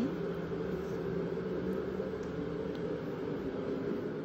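Steady low hum, with a few faint, light ticks.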